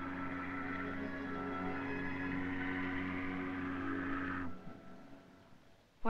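Ship's whistle blowing one long, steady, low blast that starts suddenly and stops after about four and a half seconds, then fades away.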